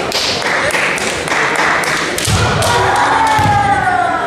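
Kendo fencers in a match: sharp clacks of bamboo shinai, heavy thumps of stamping feet on the hall floor about two seconds in, and from about three seconds a long drawn-out kiai shout that falls slowly in pitch.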